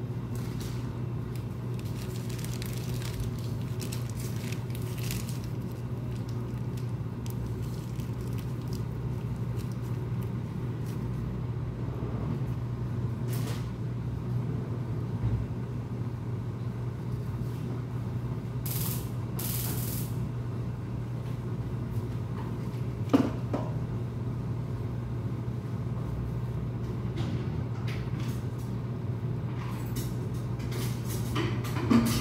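A steady low hum of kitchen background, with faint clinks of kitchen work, a short hiss a little past halfway, and one sharp knock about three-quarters of the way through.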